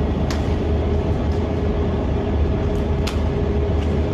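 Face-mask manufacturing machine with an ultrasonic sealing unit running: a steady mechanical hum over a low rumble, with two sharp clicks, one just after the start and one near the end.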